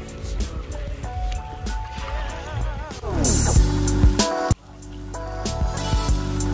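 Background music with a steady beat. About three seconds in, a wavering tone slides downward and heavy bass comes in; shortly after, the music briefly cuts out and then swells back.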